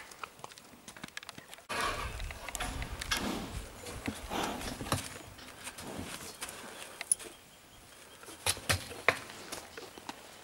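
Horses' hooves giving faint clops and scattered sharp knocks, first on a stony track and then as a horse stands in a steel starting-gate stall. Around the middle there is a low rumbling.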